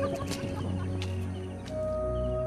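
A few sharp clicks and faint short chirps over a low steady hum. Soft background music with long held notes comes in near the end.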